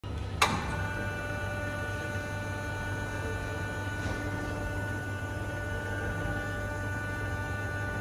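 Heidelberg Printmaster PM 74 sheetfed offset press, powered up, giving a steady hum with several steady whining tones above it. A single sharp click comes about half a second in.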